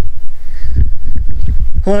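Wind buffeting the microphone: a loud, low, uneven rumble. A man's voice starts again near the end.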